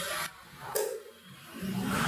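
A man sipping water from a drinking glass in a pause, with a short swallow just under a second in. A low steady sound rises near the end.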